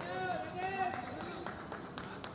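Men's voices calling out, one of them a drawn-out call, followed by a few sharp clicks.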